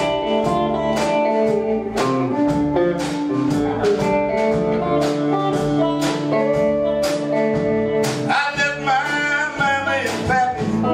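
Live blues band playing an instrumental passage: acoustic and electric guitars over bass, with a steady beat. Near the end a lead line bends up and down in pitch.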